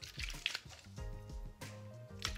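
Water sloshing in a plastic spray bottle as it is shaken by hand to mix in peppermint oil, under background music with a steady beat.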